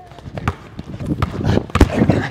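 Basketball dribbled on a hardwood gym floor: several sharp bounces, the loudest near the end as the player drives.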